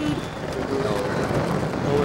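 Wind rushing over the microphone of a slingshot ride's on-board camera as the capsule swings in the air: a steady low rushing noise, with riders' voices briefly over it.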